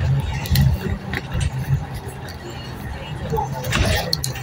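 Road noise of a vehicle driving on a highway, heard from inside the cabin: a continuous low rumble that rises and falls, with a few small clicks and a short rush of noise near the end.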